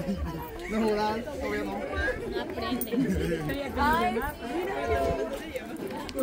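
People's voices talking and chattering, indistinct, with no clear single speaker.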